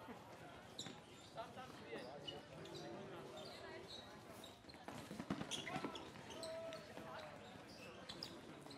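Floorball play: sharp clicks and knocks of plastic sticks and the plastic ball striking each other and the court surface, scattered irregularly, with players' short shouts in between.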